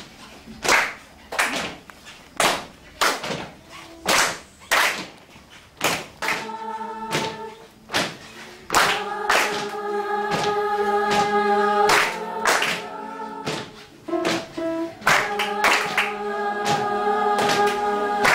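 A group claps a steady beat, a little under two claps a second. About six seconds in, voices join, singing held notes together over the clapping.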